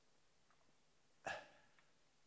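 Near silence, broken once about a second in by a brief voice-like sound, a single short grunt or 'huh'.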